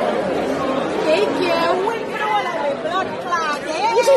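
Several people talking at once, their voices overlapping into chatter with no clear words.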